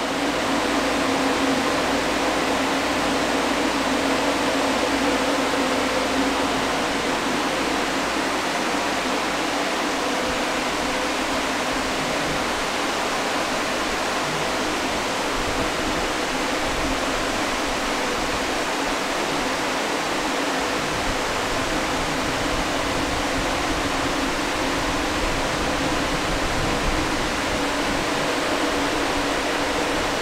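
Steady whooshing of many graphics-card cooling fans on a GPU mining rig running under load with fans at about 80%, with a faint steady hum under the rush of air.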